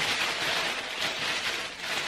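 Thin clear plastic wrapping crinkling and rustling as it is handled, a continuous crackly rustle.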